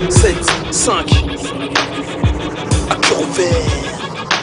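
Instrumental hip-hop beat: deep kick drums that slide down in pitch, sharp snare hits and a held synth note.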